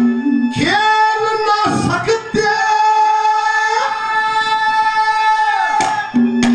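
Haryanvi ragni music: a high sung note slides in about half a second in and is held steady for about five seconds, then drops away near the end.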